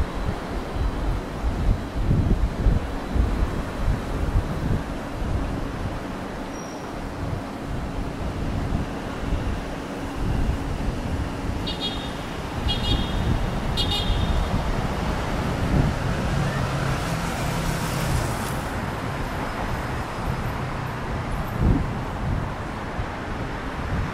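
Road traffic on a city street, cars passing with a steady rumble and wind gusting on the microphone in the first few seconds. About twelve seconds in, three short high beeps about a second apart, and a car swells past a few seconds later.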